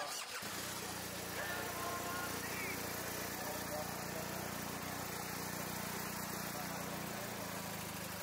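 A car engine idling close by, a steady low hum, under the murmur of a crowd's voices.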